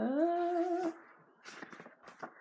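A woman's brief hummed "mmm" that rises at first, then holds for just under a second, followed by faint rustling of book pages being turned.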